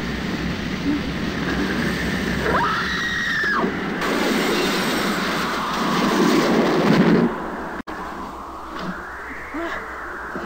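Film sound effects of air and vapour rushing through an opened shuttle hatch: a loud, continuous rush with a shrill, arcing screech a few seconds in. The rush cuts off sharply a little after seven seconds, leaving a quieter rumble.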